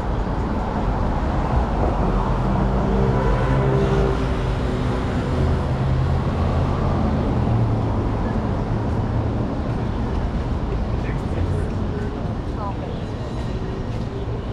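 Street traffic: a vehicle engine runs and passes over steady road noise, heaviest in the first half and easing slightly toward the end.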